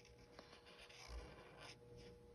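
Faint scratching of a Sharpie permanent marker drawing on paper in a few short strokes.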